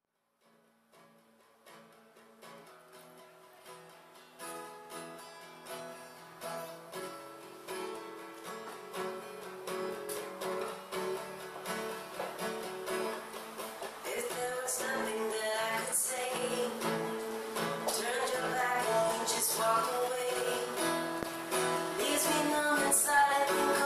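Steel-string acoustic guitar with a capo playing a song intro that fades in from silence and grows steadily louder. A woman's singing comes in during the latter part.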